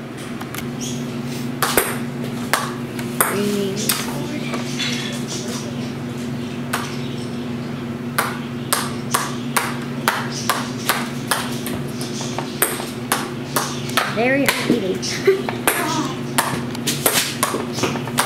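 Brother electric sewing machine running: a steady motor hum with sharp clicks and knocks from the needle and feed, coming thicker and faster in the second half.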